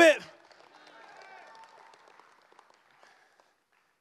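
A congregation answers with faint scattered cheers, shouts and clapping, dying away by about three seconds in.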